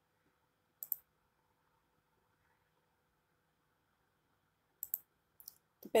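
Near silence with a faint steady hum, broken by a few short, faint clicks: one about a second in and a small cluster shortly before the end.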